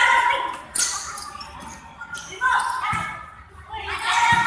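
Players and spectators shouting in a large gymnasium hall during a volleyball rally, the calls coming in short bursts. A sharp slap of the ball being hit comes about three-quarters of a second in.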